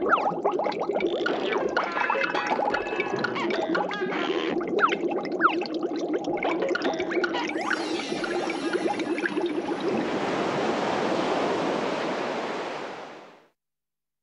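Cartoon underwater sound effects: bubbling with many quick sliding chirps and pops over a steady low drone. About ten seconds in it gives way to a wash of surf-like noise that fades out.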